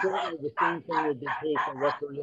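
An animal yapping in quick, short, repeated calls, about four a second, over a man's voice talking at the same time.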